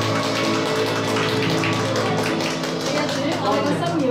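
Electronic keyboard playing worship music: sustained chords over a steady rhythmic beat, with a voice coming in near the end.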